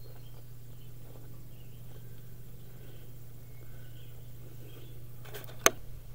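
Outdoor ambience: a steady low hum with faint insect and bird calls, and one sharp click shortly before the end.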